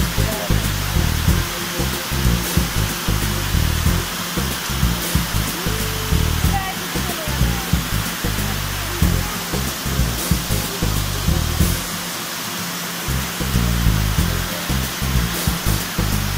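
Steady roar of a waterfall cascading over a rock face into a pool, with irregular low wind buffeting on the microphone.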